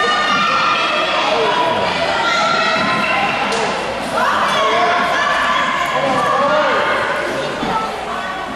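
Many overlapping voices of children and adults shouting and calling out, echoing in a gymnasium, with thuds of a soccer ball on the hard floor.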